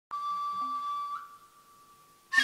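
Noh flute (nohkan) playing one long, high, piercing note that bends upward and fades out a little after a second in.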